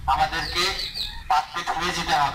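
Speech only: a man speaking loudly in short phrases.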